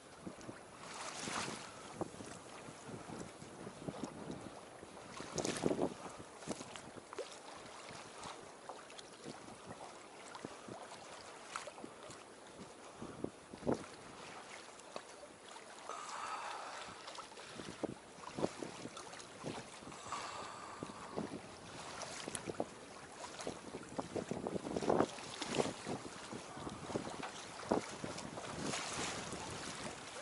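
Faint water lapping against a small boat's hull, with light wind on the microphone and scattered soft knocks and splashes, the loudest about five seconds in and again near twenty-five seconds.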